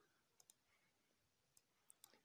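Near silence with a few faint computer mouse clicks: a pair about half a second in and two more near the end.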